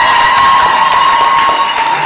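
Audience applauding and cheering, with one long, steady high-pitched note held over the clapping.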